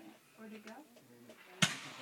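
Quiet voices in the background, then about three-quarters of the way in a single sharp firework bang with a short ringing tail: the launch of an aerial shell, whose trail rises just after.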